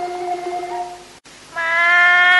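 Held notes of a Thai classical ensemble fade out, and after a brief break about one and a half seconds in, a woman's voice begins a long held sung note in Thai classical singing style.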